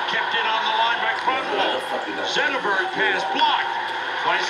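A man talking, the play-by-play commentary of a televised ice hockey game.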